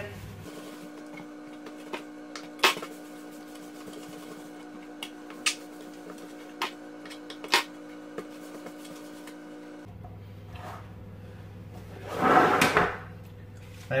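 Baking prep on a kitchen worktop: a few sharp knocks and taps as bread rolls are shaped by hand and set into a metal muffin tin, over a steady hum. Near the end comes a longer scraping rush, fitting the baking trays being slid and lifted off the worktop.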